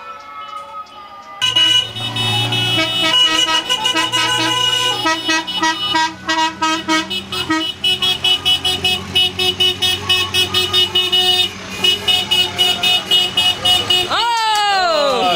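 Several car horns sounding together from a passing convoy of vehicles: held blasts that start suddenly, then rapid repeated toots through the second half.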